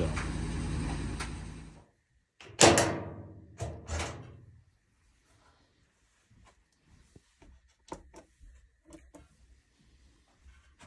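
A laundry machine runs steadily and cuts off abruptly about two seconds in. Then comes a loud knock that rings on for about a second, then two smaller knocks, typical of a metal cabinet door being opened or shut. Faint scattered clicks follow.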